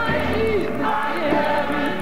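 Recorded Christian music: several voices singing together over a sustained accompaniment, with a fast, even ticking rhythm high above.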